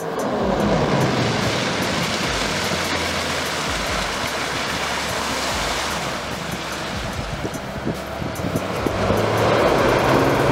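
Sokol hovercraft running at speed: a steady rush of its engine and ducted propeller fan, mixed with air and spray noise. It grows louder near the end as the craft comes close.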